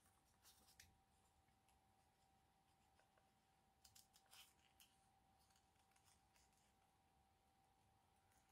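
Faint snips of small scissors cutting thin copy paper: a couple about half a second in and a short cluster about four seconds in, with near silence between.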